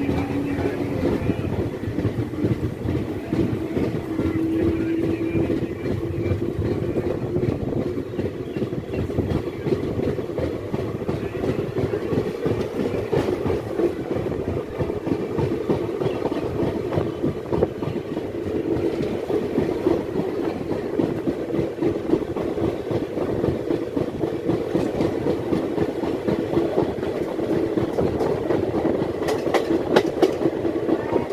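Train ride heard from on board an LHB passenger coach: steady wheel-on-rail rumble with fast clickety-clack as the train picks up speed out of a station. A faint tone rises slightly over the first few seconds.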